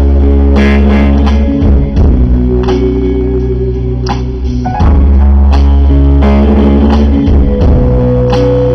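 Live band music led by guitar, plucked notes ringing over a loud, deep bass that swells in two long stretches.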